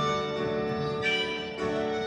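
Live band playing an instrumental passage: sustained held notes over guitar and piano, with a new higher note coming in about halfway through.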